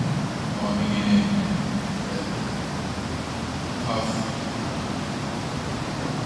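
A man speaking into a microphone in short, faint snatches over a steady background hiss.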